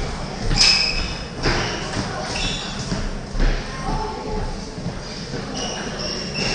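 Table tennis balls being struck by bats and bouncing on tables, several rallies at once, heard as sharp clicks. Brief high squeaks and murmured voices come through in the background.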